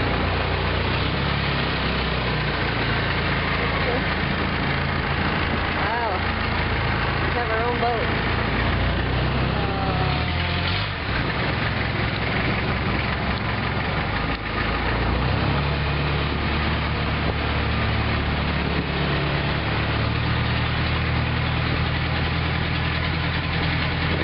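Long-tail boat's engine running steadily under way, its note shifting between about ten and fifteen seconds in.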